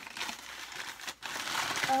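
Packing material crinkling and rustling as hands dig into a box and unwrap an item, with a short pause about a second in.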